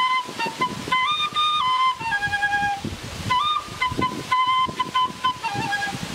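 Quena, the Andean notched end-blown flute, playing a slow melody of held notes that step up and down, with a short break about three seconds in.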